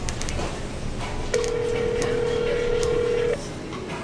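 Phone ringback tone playing from a smartphone held out on speaker: one steady two-second ring starting about a second and a half in. The call is ringing unanswered at the other end.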